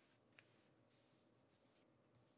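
Near silence, with faint rubbing of glossy trading cards as they are slid through a stack in the hands, and one tiny click about half a second in.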